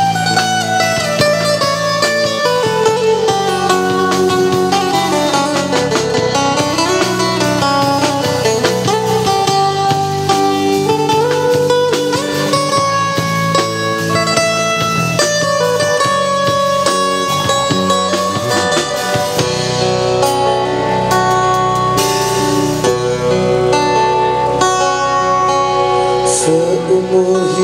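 A live band playing: an amplified acoustic guitar carries the lead melody, with notes that slide and bend, over electric bass and a drum kit.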